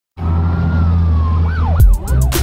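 Eerie synthesized intro music: a deep steady drone under a high tone that slowly slides down, then quick rising-and-falling pitch sweeps that sound like a siren, and a falling swoop into a low hit near the end.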